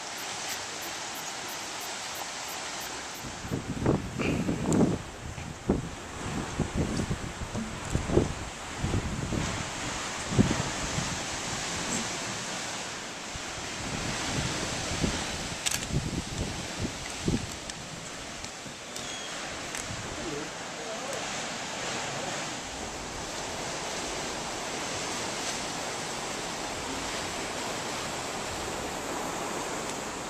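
Sea surf washing against rocks, with wind hitting the microphone in uneven low gusts during the first half.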